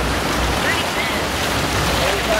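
Seawater rushing and splashing along the side of a moving boat's hull, a steady hiss of wake and spray.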